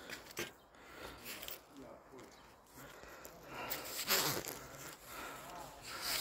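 Mostly quiet background, with a brief, faint murmur of a voice about four seconds in.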